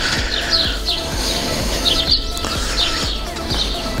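Small birds chirping in short, repeated phrases, over quiet background music.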